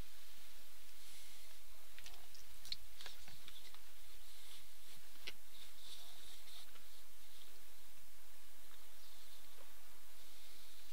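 Quiet open-air ambience with faint high chirps and a scattering of small sharp clicks in the middle.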